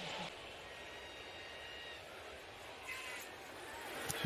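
Faint, steady crowd noise from a televised football game's broadcast audio.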